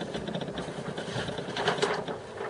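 Handling noise: paper and a leather cover rustling and sliding across a cutting mat as they are moved, with a few brief scratchy strokes in the second half.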